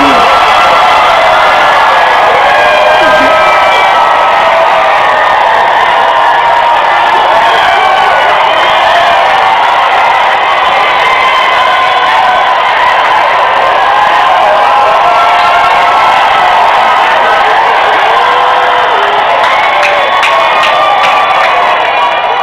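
A large congregation cheering and shouting, many voices at once, loud and sustained without a break.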